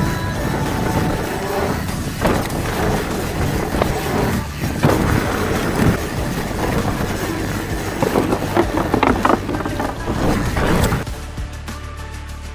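Mountain bike rolling fast down a dirt trail: a rush of tyre and wind noise with rattles and knocks from the bike over bumps, under background music. Near the end the riding noise drops away abruptly, leaving only the music.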